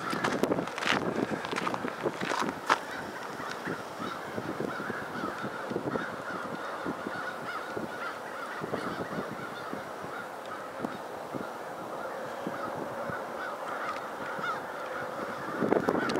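A large flock of birds calling at once, many overlapping honking calls in a steady chatter. A couple of sharp knocks come near the start.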